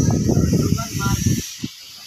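Wind buffeting the microphone: a loud, uneven low rumble that drops away about one and a half seconds in, over a steady high hiss.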